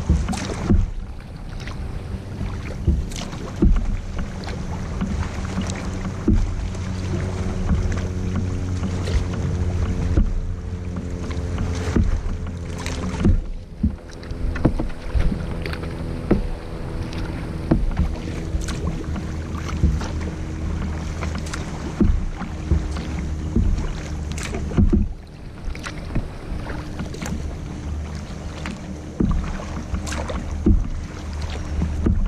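Kayak paddle strokes: the double-bladed paddle dips and splashes into the water about every second or so, alternating sides. Water slaps against the hull underneath, and a steady low hum runs throughout.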